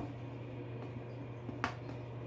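A steady low hum with a small click at the start and a sharper click about one and a half seconds in.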